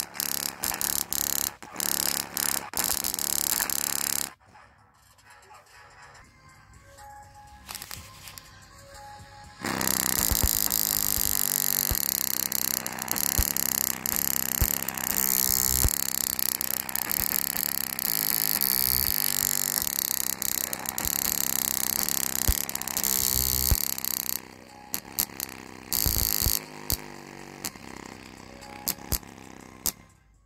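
Music played loud through a bare JBL Go 2 speaker driver. It drops to a quiet passage about four seconds in, comes back loud at around ten seconds, and turns choppy, cutting in and out, for the last few seconds.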